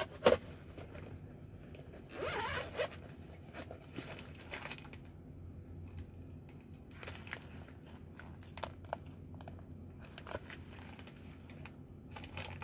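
Zipper of a headset's carrying case being pulled open, followed by scattered small clicks and scrapes as things are handled.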